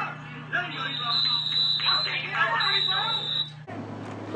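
Voices of people talking at a football game, with a referee's whistle blown in a long, high, steady blast after a tackle. The whistle starts about a second in, breaks briefly and runs on for about two and a half seconds in all. The whole sound cuts off abruptly near the end.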